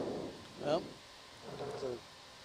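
Mostly speech: people talking in a control room. A short rush of noise at the very start is the loudest moment.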